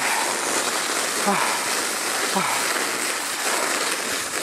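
Steady rushing hiss of a sled speeding down a snow run: runners sliding on the snow and air rushing past the microphone.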